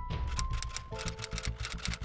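Typewriter key strikes clicking in a quick run, a sound effect for on-screen text typing out letter by letter, over background music whose held notes change about a second in.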